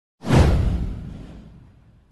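A sound-effect whoosh with a deep low boom for an animated intro. It swells in suddenly, falls in pitch and fades out over about a second and a half.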